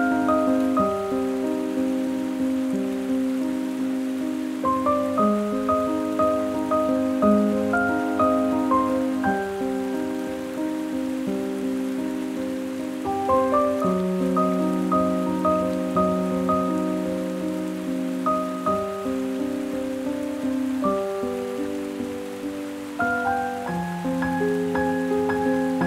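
Solo piano playing a slow, solemn piece with heavy reverb: broken chords in the middle register, each note left to ring and overlap the next.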